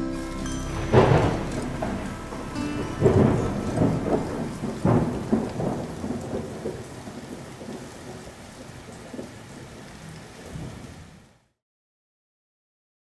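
Thunderstorm sound effect: steady rain with loud thunderclaps about one, three and five seconds in, each rumbling on, then the storm fades out near the end.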